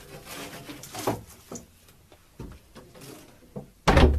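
A window being opened and shut: a rubbing scrape for about a second ending in a knock, a few small clicks and taps of the frame and catch, then a loud slam shortly before the end.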